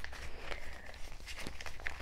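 A paper tracker card being slid into a clear plastic zippered binder pouch, with soft rustling and a few light taps and clicks of paper and plastic being handled.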